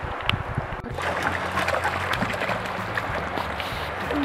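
Shallow trout stream rushing and rippling over stones. A steady low rumble joins it from about a second in.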